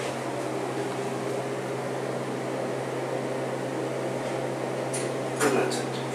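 Steady low mechanical hum inside a hydraulic elevator cab, with a clunk about five and a half seconds in.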